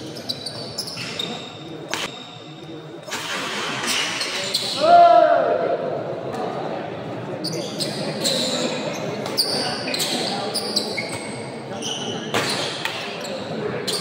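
Badminton racket strikes on the shuttlecock in a doubles rally, sharp hits about a second apart, ringing in a large hall. Spectators' voices swell from about three seconds in and are loudest around five seconds.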